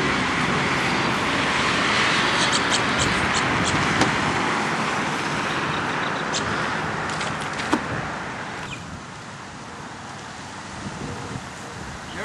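Road traffic noise from a passing vehicle, a steady rush that fades away about eight or nine seconds in, with a few light clicks over it.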